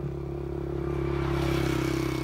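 Small motorbike engine running at a steady pitch, growing louder as the bike comes up from behind and passes close by.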